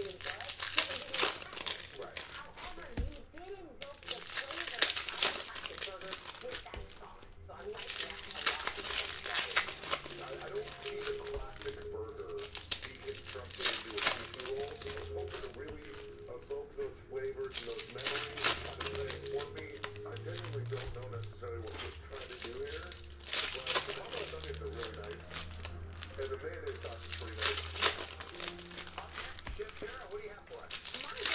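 Foil trading-card packs being torn open and their wrappers crinkled by hand, in irregular bursts of rustling.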